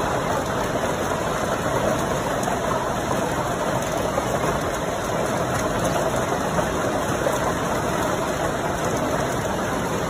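Hailstorm with heavy rain: a dense, steady roar of hailstones and rain pelting the ground and surfaces, with faint fine ticking.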